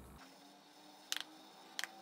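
Quiet room tone broken by two short, sharp clicks a little over half a second apart, about a second in.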